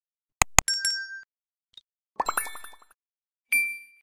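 Animated subscribe-button sound effects: two sharp mouse clicks, then a short bright chime. About two seconds in comes a quick run of about eight short pitched plops, and near the end a single bright ding that rings out as the logo appears.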